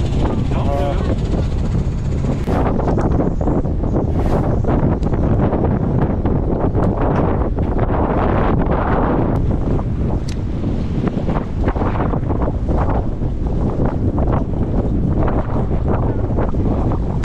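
Strong wind buffeting the microphone on the open deck of a fishing boat in a rough sea, over a steady low rumble of the boat and the water.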